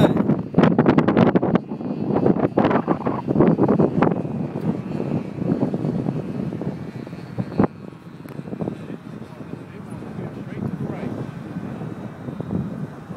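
Radio-controlled Ultra Stick airplane's motor droning faintly at a distance, with gusty wind buffeting the microphone, heaviest in the first few seconds.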